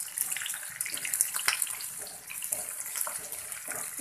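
Quartered onions sizzling in hot oil in a frying pan, with the scrapes and light knocks of a wooden spatula stirring them against the pan.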